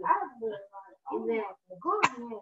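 A child's voice making several short sounds without clear words, each sliding up and down in pitch, answering a question about when he groans.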